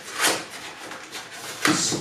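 Cardboard packaging being handled and pulled: a short scrape of cardboard about a quarter second in, then softer rubbing and rustling.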